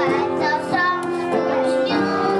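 A child singing into a microphone over live instrumental accompaniment, with a violin among the instruments.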